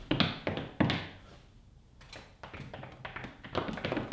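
Light taps and thunks of a hand on a laptop and tabletop: a few separate knocks in the first second, then a quicker run of small clicks near the end.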